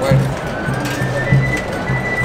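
Processional band music behind a Holy Week palio: a slow march with an even bass-drum beat a little under twice a second and a long held high note over it.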